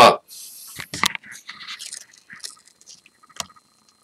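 Camera being handled and moved close over a glass of beer: a brief hiss, a couple of sharp clicks about a second in, then faint scattered clicks and scrapes, with one more click near the end.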